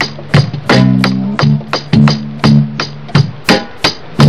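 Drum beat played on an electronic drum kit: sharp hits about twice a second over short, pitched low notes.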